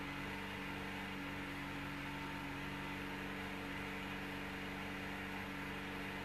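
A steady background hum with several fixed pitches over a faint hiss, unchanging.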